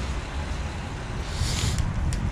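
Steady low rumble and hiss of a bicycle being ridden: wind buffeting the camera microphone and tyres rolling on wet paving, with a brief rise in hiss about a second and a half in.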